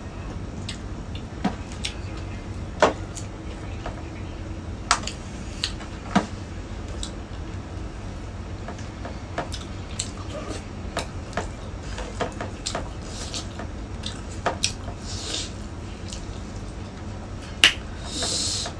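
Close-up mukbang eating sounds: scattered wet clicks and smacks of chewing and mouth noises, over a low steady hum.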